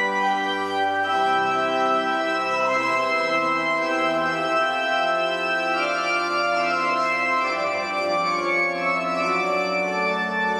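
Organ playing slow, sustained chords, the held notes shifting every second or so.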